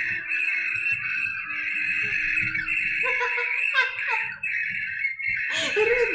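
A bad phone-call line: a steady harsh hiss with a low hum under it for the first three seconds and faint garbled voices about three to four and a half seconds in. The caller has YouTube open, so the show's own stream is feeding back into the call.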